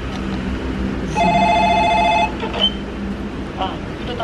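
An electronic ringing tone, two pitches sounding together, starts about a second in and lasts about a second, over a steady low hum.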